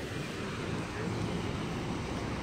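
Steady rushing noise of wind buffeting the phone's microphone over the wash of surf on the rocky reef, with an uneven low rumble.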